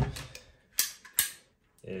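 Two sharp snapping clicks about half a second apart from a hand-held ratchet PVC pipe cutter's jaws being worked.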